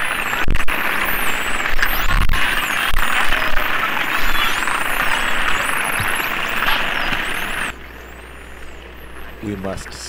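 Underwater recording of a spinner dolphin pod: many dolphin whistles rising and falling over water noise, with scattered clicks. It cuts off suddenly about eight seconds in, leaving a low steady hum, and a voice begins near the end.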